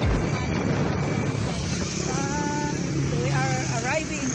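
Vehicle engine and road noise while driving, a steady low rumble. A brief held tone comes about two seconds in, and people's voices near the end.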